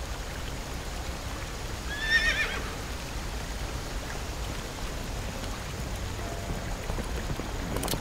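Steady rush of river water, with a horse whinnying briefly, a short high wavering call, about two seconds in. A single sharp click comes near the end.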